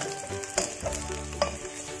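Fried potato chunks and minced garlic sizzling in hot oil in a pot while a wooden spatula stir-fries them, with two sharper knocks of the spatula against the pan, about half a second and a second and a half in.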